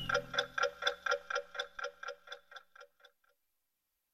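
Clock-like ticking, about four pitched ticks a second, fading steadily until it stops a little over three seconds in.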